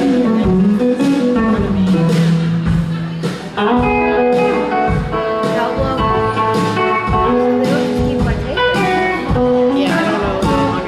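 Live band playing an instrumental break: electric guitar lead over bass guitar and drum kit, in a blues-country style. The lead line slides up and down in pitch for the first three seconds, then settles into held notes over steady drum hits.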